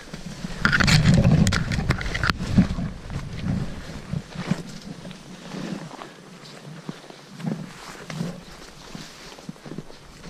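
Footsteps in deep, fresh snow, soft irregular crunches. In the first two seconds a louder scuffling rush of noise stands out.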